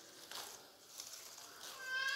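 A cat meowing once, briefly, near the end.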